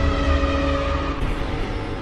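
Logo intro sound effect: a deep rumble with steady ringing tones that stop about a second in, then the whole sound fades out slowly.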